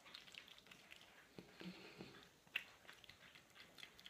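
Faint, irregular wet squishing and rubbing of hands working a lathered foaming cleanser over wet facial skin.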